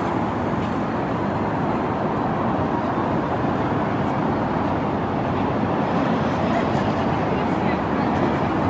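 Steady road-traffic noise from a busy city square, with people's voices mixed in.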